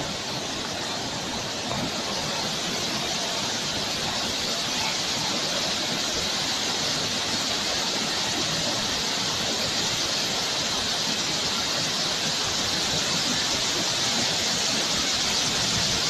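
Kutralam waterfall pouring down a rock face onto a bathing area: a steady rushing of falling water that grows slightly louder.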